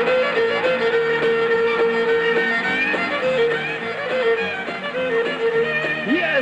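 Country fiddle music with a bass line underneath; the fiddle holds one long note through much of it.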